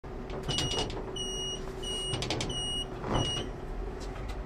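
Door-closing warning of a bus or tram: a high electronic beep sounds five times in quick succession, about one and a half beeps a second, over a low vehicle rumble, with small clicks between the beeps.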